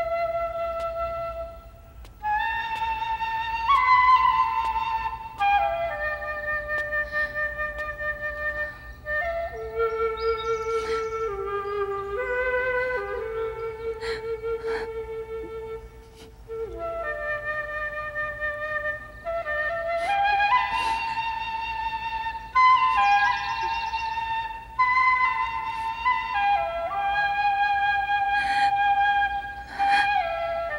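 Solo flute playing a slow melody of long held notes in phrases, with brief breaks between them. A passage in the middle sits lower before the melody climbs again.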